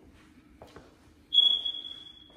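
A steady, high-pitched electronic tone starts suddenly past the middle, loudest at its start and then holding on a little softer, over faint room hum.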